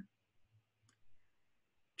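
Near silence, broken by a single faint click just before a second in.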